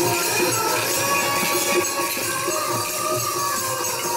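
Harmonium playing held tones, with tabla strokes keeping a steady rhythm beneath.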